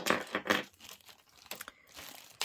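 Crinkly packaging being handled, rustling and crinkling, loudest in the first half second, then a few light clicks.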